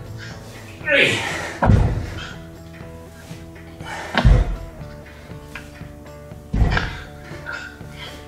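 Dumbbells set down on the floor with a heavy thud three times, about every two and a half seconds, in time with push-up and dumbbell-row reps, over steady background music.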